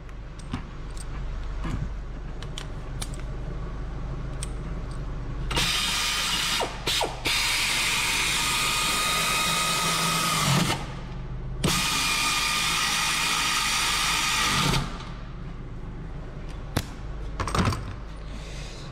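Pneumatic air ratchet spinning a bolt on a car's rear brake caliper, run in two bursts of a few seconds each with a brief catch in the first. Light clicks of tools being handled come before and after.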